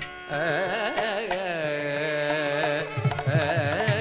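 Carnatic classical vocal music: a male voice singing long, heavily ornamented notes that waver and slide in pitch. Drum strokes come back in about three seconds in.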